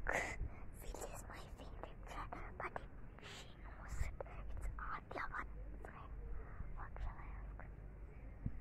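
Soft whispering and breathy murmurs close to a phone microphone, in short scattered bursts over a low rumble of wind and handling on the mic.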